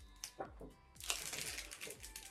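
A chocolate bar's silvery plastic wrapper crinkling as it is peeled open by hand. A dense run of crinkles comes from about a second in.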